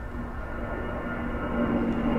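Airplane passing overhead on an airport's flight path: a steady low rumble with a faint hum, growing louder.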